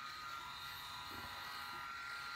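Phisco RMS8112 rotary electric shaver with three rotary heads running with a steady, quiet buzz as it is worked over shaving foam on the neck.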